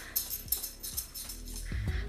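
Soft background music with a steady, sustained tone, and a few faint short clicks.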